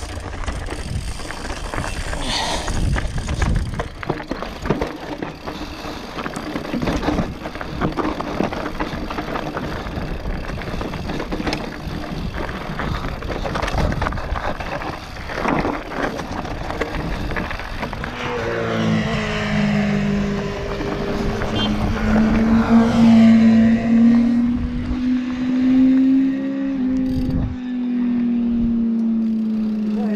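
Mountain bike descending a rough dirt and gravel singletrack: constant rattling of the bike and tyres over stones and roots, with frequent knocks and wind on the microphone. In the second half a steady buzzing tone joins in, slowly rising and then falling in pitch.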